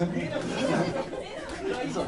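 Indistinct chatter of several people talking between songs, with no music playing.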